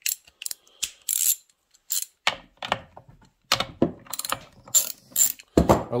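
Socket ratchet clicking in short irregular runs as the bar nuts on a Stihl 461 chainsaw's side cover are loosened, with metal clicks and a heavier clunk near the end.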